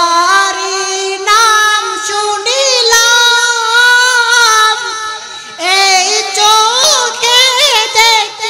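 A young man's solo voice singing a Bengali Islamic gazal in long held notes with wavering ornaments on each note. It breaks briefly for breath a few times.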